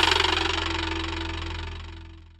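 The final chord of a cumbia song ringing out over a held bass note and fading away steadily.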